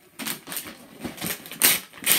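Wrapping paper being ripped and crumpled off a gift box in irregular crackling tears, loudest about one and a half seconds in.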